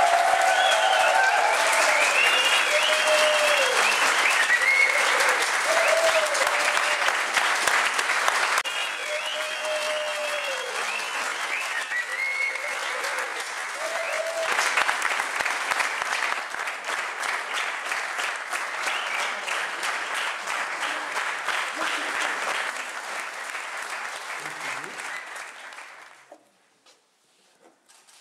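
A crowd applauding steadily, with voices calling out over the clapping in the first half. The applause is loudest early on, grows softer after about eight seconds, and fades out near the end.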